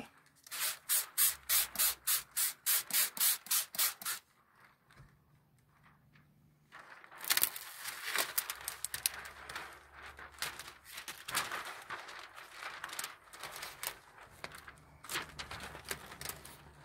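A hand trigger spray bottle of soapy water squirts a quick run of about a dozen sprays, three or four a second, onto window tint film. After a short pause comes irregular plastic crinkling and rustling as the film's liner is peeled apart while the film is wetted.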